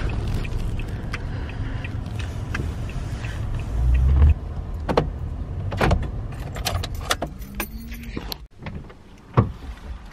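Low, steady engine and road rumble inside a moving pickup truck's cabin, cutting off suddenly about four seconds in. After that, quieter scattered clicks and knocks, with one sharp knock near the end.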